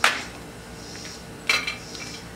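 Light plastic clicks of felt-tip markers being handled: one sharp click at the start and another about a second and a half in, over faint room tone.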